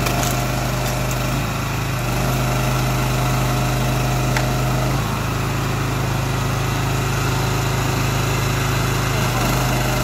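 Honda GX390 petrol engine running steadily as it drives the Krpan CV18 log splitter's hydraulic pump. Its tone shifts about halfway through and shifts back near the end while the ram works through a log.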